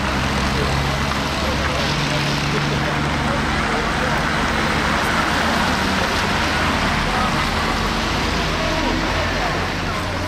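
Heavy trucks' engines running as they crawl in slow traffic, under a steady din of many voices shouting and calling at once.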